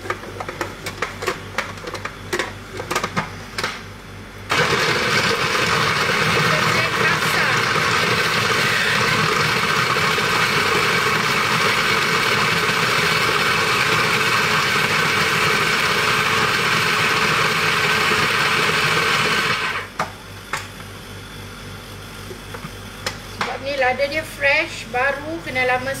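Electric blender grinding fresh red and green chilies into a paste: it starts about four seconds in with a few clicks from handling the jug just before, runs steadily and loudly for about fifteen seconds, and cuts off suddenly.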